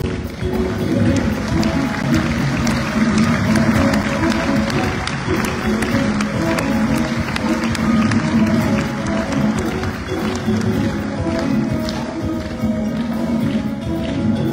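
Live ensemble music: an oud played over a drum kit with cymbals, the full band playing together without a break.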